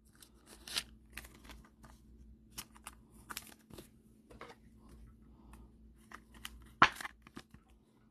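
Sports trading card being handled and slid into a clear plastic holder: faint scrapes, rustles and small clicks of card on plastic, with one sharper snap near the end as the case is closed.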